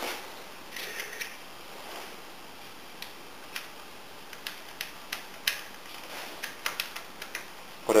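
Faint, scattered small clicks and ticks of a metal washer and nut being handled by hand and fitted onto the end of a threaded rod, over a low hiss.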